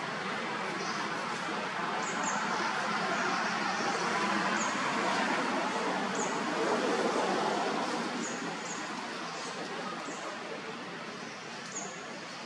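Steady outdoor background noise with short, high chirps scattered through it, like small birds calling.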